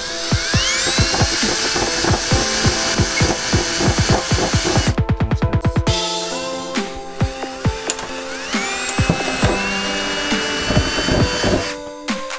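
Milwaukee cordless drill spinning up with a rising whine and running steadily for about four seconds while drilling into a car's trunk lid, then spinning up again about eight seconds in and cutting off suddenly near the end. Electronic music with a steady beat plays under it throughout.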